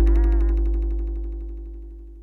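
The closing of a rap beat fading out: a long, deep bass note and a held synth tone die away steadily, with a short sliding tone just after the start.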